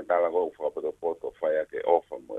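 A person speaking in Tongan over a telephone line, the voice thin and narrow.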